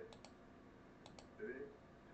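Two quick double clicks of a computer mouse, the first just after the start and the second about a second in, faint against near silence.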